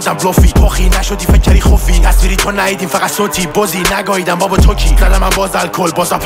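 Persian-language rap over a hip-hop beat, with long, deep sub-bass notes swelling in every couple of seconds under the rapped vocal.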